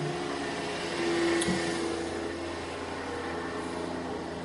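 Steady mechanical room noise with a low hum and a faint click about a second and a half in.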